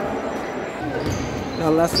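Basketball being dribbled on a hardwood gym floor, a few low bounces a little past the middle, over the steady chatter of spectators in the gym.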